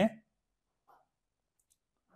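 A man's voice finishing a word, then near silence with one faint, short sound about a second in.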